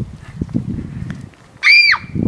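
A short, very high-pitched squeal that rises and falls, near the end, is the loudest sound. Before it come low, irregular thuds and rustling of footsteps on grass.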